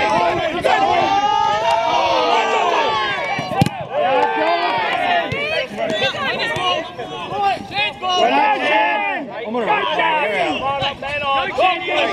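Several voices calling and shouting across a soccer pitch, overlapping one another, with a single sharp knock about three and a half seconds in.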